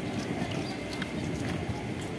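Footsteps on a hard pavement, about two a second, over a steady hum of street noise.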